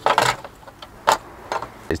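Loose plastic steering column shroud being handled: a brief rustling clatter at the start, then a single sharp click about a second in.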